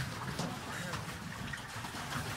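Lake water lapping against a small boat, with low murmuring voices behind it.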